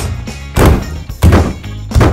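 A fist punching whole tomatoes in a glass bowl: three heavy thuds, evenly spaced about two-thirds of a second apart, over background music.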